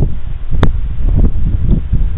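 Wind buffeting the microphone: a loud, uneven low rumble. Two sharp clicks come within the first second.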